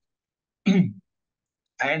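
A man clears his throat once, a short, loud, rough burst a little over half a second in.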